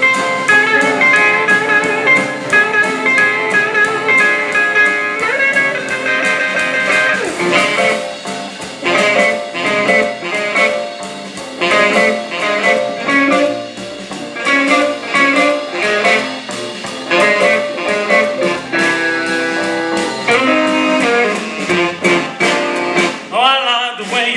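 Live band playing an instrumental blues passage on electric guitars with upright bass and drums: held notes at first, then choppy rhythmic chords. A singing voice comes in right at the end.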